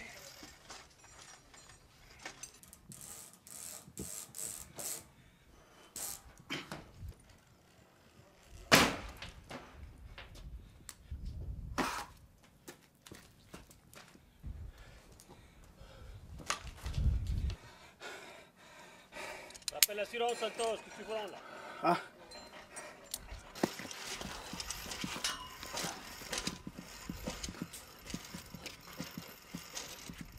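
Irregular knocks, clicks and scrapes of a climber's boots and gear against rock and a metal pipe, with one sharp knock about nine seconds in. A short grunted 'ah' comes near the end.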